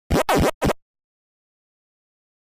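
Distorted, sped-up audio of a 'Preview 2 Effects' logo edit, chopped into three short, scratchy snatches, one with pitch sweeping up and down, then cutting off suddenly to silence less than a second in.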